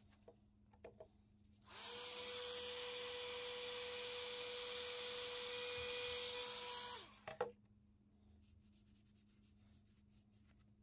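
Small handheld heat gun's fan motor starting up, running steadily with a hum and rushing air for about five seconds, then winding down, warming leather wax into a knife sheath. A few light clicks come just before it starts and just after it stops.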